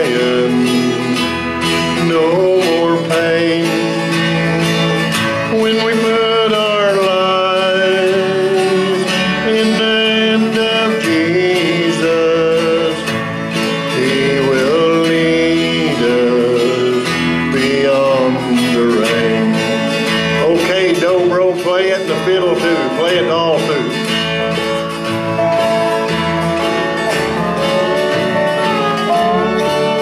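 Acoustic country-gospel band playing an instrumental break: strummed guitar backing under a melody line that slides between notes with vibrato.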